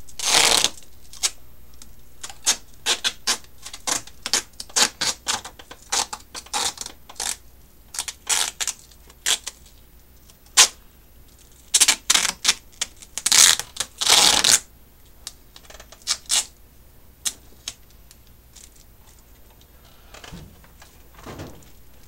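Duct tape being pulled off the roll and pressed down along the edge of a foil-covered glass plate: a run of short crackles and clicks, with several longer ripping pulls of tape, the longest a little past the middle.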